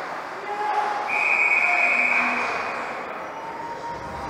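Referee's whistle blown in one long steady blast of nearly two seconds, starting about a second in, stopping play. Arena crowd murmur underneath.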